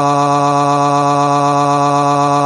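A computer text-to-speech voice cries one long 'waaaah' in a flat, unchanging pitch, the way a child's bawling comes out of a speech synthesizer.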